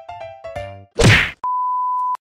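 Edited intro sound effects: a short run of bright background-music notes, then a loud whack hit about a second in, followed half a second later by a steady high-pitched beep tone.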